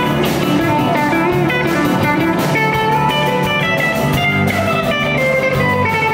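Several electric guitars playing together live through amplifiers, a lead line with notes sliding in pitch over the chords.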